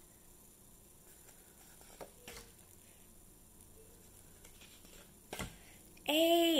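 Near silence: room tone, with a few faint clicks from paper flash cards being handled and swapped. The clearest click comes about five and a half seconds in.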